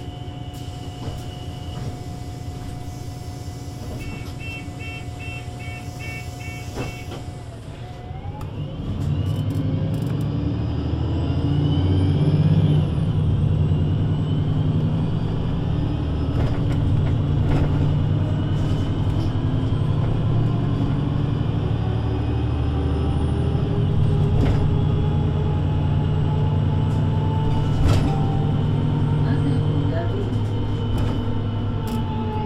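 VDL Citea LLE 120 city bus heard from inside, its engine idling with a steady whine, and a run of about eight short beeps from about four seconds in. About eight seconds in the engine and Voith automatic gearbox take up load and the bus pulls away: the sound grows louder and a whine climbs in pitch, then runs on steadily under power.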